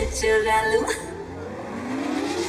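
Dance mix at a breakdown: a short vocal line sits over the music in the first second, then the beat drops out and a slowly rising sweep builds in its place.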